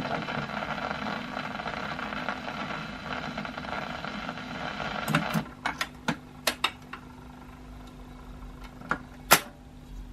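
Surface hiss of a 78 rpm record running in its end groove. About halfway it stops, and the automatic record changer's mechanism clicks and clunks over a low motor hum as the tonearm lifts and swings back to its rest, with one sharp click near the end.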